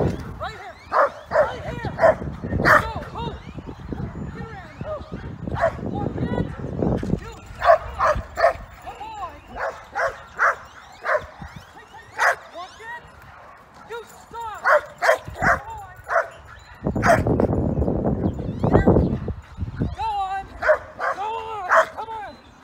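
A dog barking over and over in short, high yips while it runs an agility course. Bursts of low rumble come near the start and again about two-thirds of the way through.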